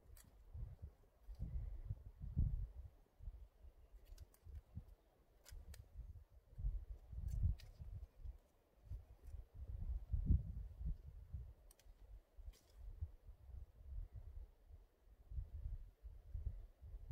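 Faint scattered clicks and rustles of hands working a tarp guyline at its ground stake among dry leaves, over a low, uneven rumble.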